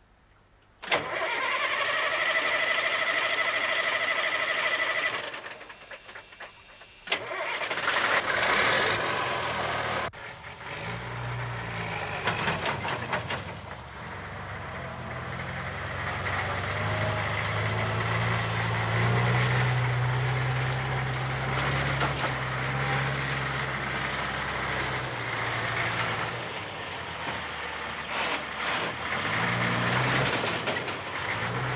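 An Oshkosh truck's engine being started: a steady whine from the starter for about four seconds, a lull and a sharp click, then the engine catches and runs with a steady low note that grows as the truck pulls away.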